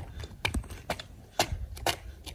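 Sneakers stepping on bare concrete in an even dance rhythm: sharp steps about two a second.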